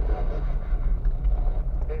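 A car driving slowly over a rough gravel-and-dirt track, heard from inside the cabin: a steady low rumble of tyres and suspension on the uneven surface.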